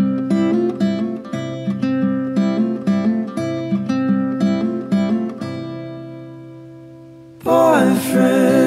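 Music: a fingerpicked acoustic guitar plays a run of plucked notes, which thin out and ring away to near quiet. Just before the end, layered singing voices come in suddenly and loudly.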